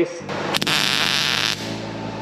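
MIG welder tack-welding a steel cap onto square steel tubing: the arc hisses and crackles for about a second, then stops.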